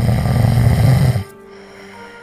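One loud snore, about a second and a half long, that stops suddenly a little over a second in.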